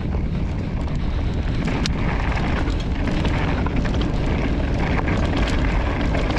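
Wind rumbling on the microphone of a chest-mounted action camera, with tyres rolling over a dry dirt singletrack and frequent small clicks and rattles from an electric mountain bike riding over it.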